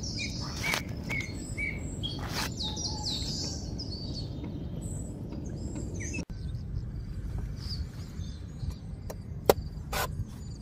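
Small birds chirping repeatedly over a steady low outdoor rumble, with a few sharp knocks of a cleaver chopping into a young coconut; the loudest chop comes near the end.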